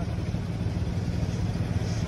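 Sport motorcycle engine idling steadily.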